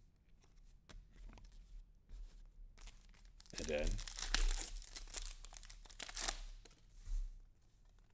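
A 2022 Select football card pack's wrapper torn open and crinkled, loudest from about three and a half to six and a half seconds in, with light clicks of cards being handled before it.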